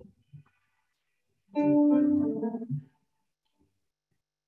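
A single chord from an accompanying instrument, held about a second and a half in the middle of an otherwise quiet stretch, as the lead-in to a hymn.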